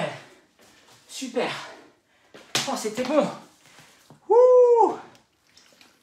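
A man's voice, out of breath at the end of a high-intensity interval workout: breathy exhalations and short wordless mutters, then one loud drawn-out vocal exclamation that rises and falls in pitch about four and a half seconds in.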